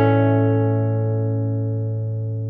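Acoustic guitar chord, played fingerstyle, ringing out and slowly dying away, with no new notes plucked.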